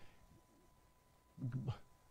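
Near silence with a faint steady high tone, then about one and a half seconds in a man's short low hesitation sound, an "um", falling in pitch.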